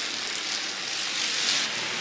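A pack of stock cars racing around the track, their engines blended into a steady, hissy wash with no single engine standing out.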